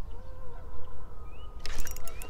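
A steady low rumble with a brief rising bird chirp. About a second and a half in, the rapid clicking of a spinning reel being cranked begins as the cast lure is retrieved.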